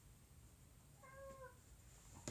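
A cat meowing once, faint and short, about a second in.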